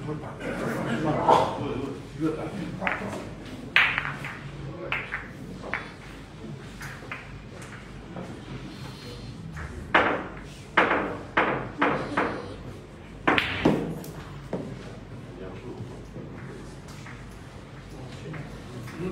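Billiard balls rolled by hand in boccette clicking sharply against one another and against the cushions. There are single clicks early on, a quick run of four or five knocks in the middle and a pair a little later, with low voices murmuring in the room.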